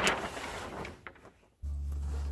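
Kraft paper rustling and crackling as a sheet is handled and spread out, loudest at the start and dying away within about a second. Near the end a steady low rumble starts.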